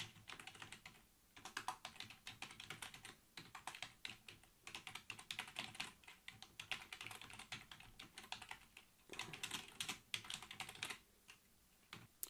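Computer keyboard typing in faint runs of quick keystrokes, broken by short pauses.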